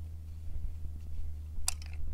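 Ratchet wrench with a 24 mm socket on the oil drain plug of a Honda NX 150 crankcase, being worked to loosen the plug: one sharp metallic click near the end, with a few faint ticks. A steady low hum runs underneath.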